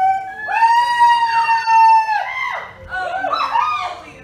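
A high voice holding one long, level note for about a second and a half, then breaking into short sliding vocal sounds that fall in pitch and wander up and down.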